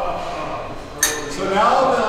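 A single sharp metallic clink about a second in, ringing briefly, over men's voices talking in the background.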